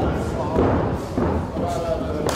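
Thuds of wrestlers' bodies and feet on a pro-wrestling ring's mat, the strongest about half a second in, with voices shouting.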